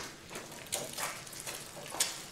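Light kitchen clatter: dishes and utensils clinking and tapping a few times over a faint hiss while breakfast is being cooked.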